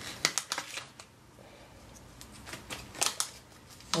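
Light handling noises: a cluster of short taps and rustles in the first second, then a quiet stretch, then another few taps and rustles about three seconds in, as small craft items and their plastic packaging are picked up from the table.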